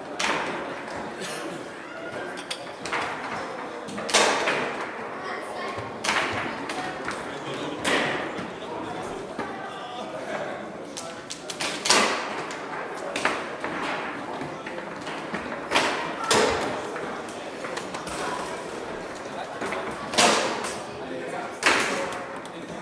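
Sharp knocks and thuds of table-football play, about one every one to two seconds, echoing in a large sports hall over a murmur of voices.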